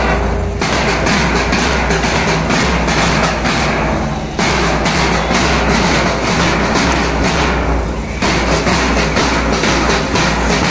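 A street procession drum band: large double-headed drums beaten with sticks in a fast, steady rhythm of strokes several times a second, with strong booming bass. The beat breaks off briefly a few times.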